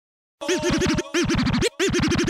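Hip hop turntable scratching: a short sample, heard as 'ja', is scratched rapidly back and forth in three short bursts, its pitch sweeping up and down about six times a second. It starts about half a second in, after silence.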